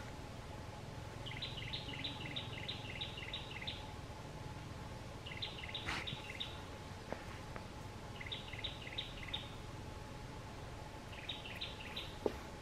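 A bird chirping in short rapid runs of high, quick notes, each note dropping slightly in pitch, four runs in all. A single sharp click comes about halfway through.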